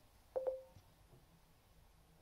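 A short electronic beep with a click, about a third of a second in, from the smartphone running the voice-command app.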